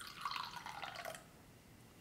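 Coffee soda poured from a can into a small cup: a short, quiet trickle of liquid that stops a little over a second in.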